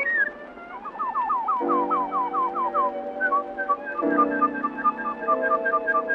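Bird-call whistling over sustained band chords in a 1928 recording: a run of quick falling chirps, about four a second, then rapid short twittering notes.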